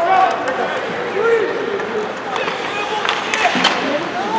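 Ice hockey game heard from the stands: overlapping shouts and calls from spectators and players, with a few sharp clacks of sticks and puck on the ice past the middle.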